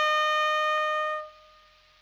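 Trumpet holding one long note, which dies away a little over a second in and leaves a brief hush.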